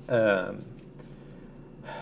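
A man's short voiced sound with falling pitch, a hesitation vocalization, followed by quiet room tone and a soft intake of breath near the end.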